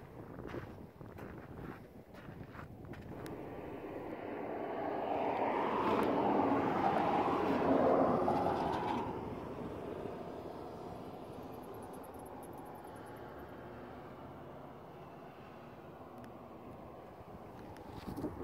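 A vehicle passing by. Its noise builds over a few seconds, is loudest from about six to nine seconds in, then fades away.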